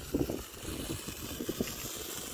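Small red Bengal flame burning with a steady faint hiss, under irregular low rumbling of wind on the microphone.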